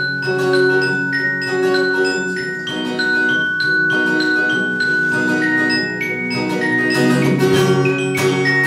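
Live acoustic band playing an instrumental passage: acoustic guitar and keyboards hold sustained chords while high, chiming melody notes ring out over them.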